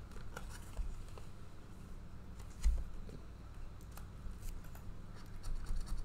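Coin scratching the coating off a Sapphire Blue 7s scratch-off lottery ticket in short, irregular strokes, over a steady low hum. A low thump comes about two and a half seconds in.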